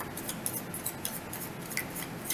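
A deck of tarot cards being hand-shuffled, packets of cards slid and tapped against the deck in a run of quick, irregular crisp clicks.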